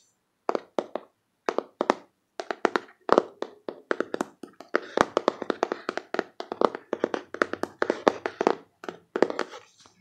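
Fingers tapping quickly on a cardboard card box, in rapid runs of crisp taps with short pauses between runs.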